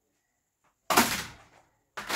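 Near silence, then about a second in a single sudden clack of a plastic food-tub lid being handled, fading within about half a second.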